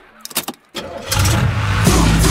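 Car engine sound effect in a K-pop track's breakdown: after a near-empty pause with a few clicks, an engine starts up and revs, swelling from about a second in as the beat comes back in.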